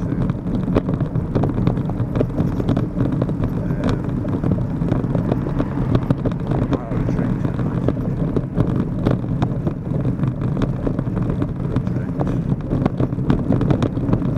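Steady wind rumble on the microphone of a camera moving along a pavement, with frequent small knocks and rattles, over road traffic.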